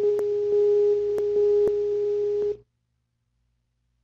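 Skype's outgoing-call tone: a single steady pitch with light hiss and a few faint clicks, cutting off suddenly about two and a half seconds in as the group call connects.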